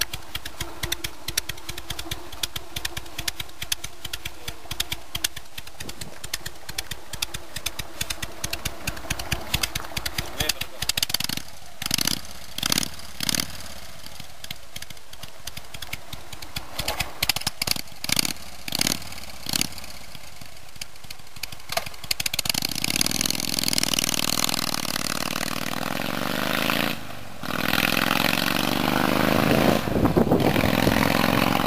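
Harley-Davidson Sportster V-twin engine idling with fast, even firing pulses. It is then revved in two sets of short throttle blips before pulling away and accelerating, getting louder with the pitch rising and falling. The sound breaks off briefly near the end before picking up again.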